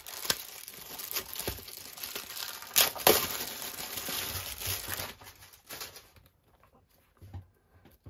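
Thin plastic bag crinkling and rustling as it is pulled open from around a book, with two sharper crackles about three seconds in; the crinkling dies down after about six seconds.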